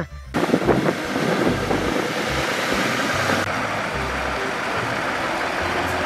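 A real Scania truck running: a steady rush of engine and road noise with wind on the microphone, the hiss dropping a little about halfway through.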